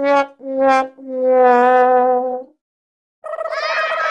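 Sad-trombone 'wah-wah-wah-wahh' comedy sound effect: short brass notes each a little lower than the last, then a long held final note. After a short gap, a crowd of voices starts shouting near the end.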